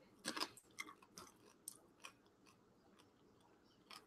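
A person biting and chewing a small crunchy bite of food: a handful of short, faint crunches, most of them in the first two seconds.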